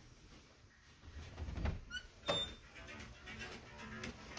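A wooden interior door being opened by its knob. Low handling sounds are followed by a short squeak and a sharp click about halfway through.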